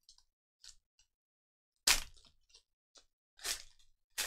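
Foil wrapper of a Panini Chronicles UFC trading card pack being torn open and crinkled. There are a few faint crackles in the first second, then two loud crinkles, about two seconds in and near the end.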